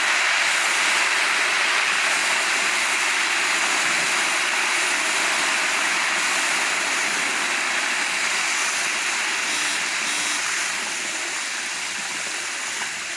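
Loud, steady sizzling of hot fat frying in a large iron kadhai, which eases a little near the end.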